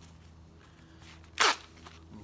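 A single short, sharp sound about one and a half seconds in as a polishing pad is pushed onto the head of a drill. Otherwise only a faint steady background hum.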